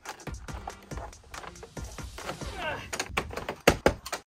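Vinyl board-and-batten siding panel being pushed and snapped into place by hand: a run of clicks and knocks, with two sharp knocks close together near the end. Background music runs underneath.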